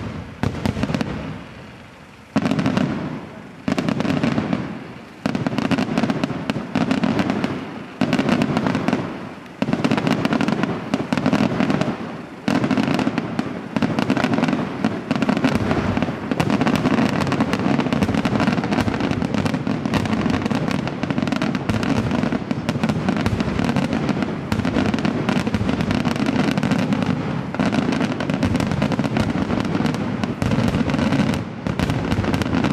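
Aerial firework shells bursting, each a sharp boom with a rumbling tail, at first about one every second or so. From about halfway the reports come thick and fast and merge into one continuous barrage.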